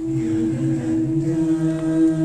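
High school vocal jazz ensemble singing a cappella, holding a sustained chord; one voice part stays on a steady note while the lower voices move to new notes about a second in.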